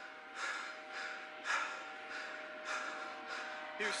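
Heavy, rapid breathing close to a body-worn camera's microphone, about one loud breath a second, over a faint steady electronic hum.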